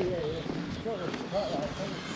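Speech: a voice talking, a little softer than the talk around it.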